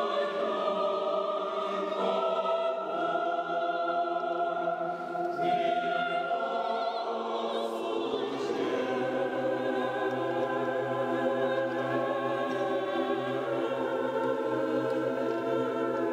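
Mixed choir of men's and women's voices singing unaccompanied, with long sustained chords shifting slowly; about halfway through, low voices come in on a held bass note.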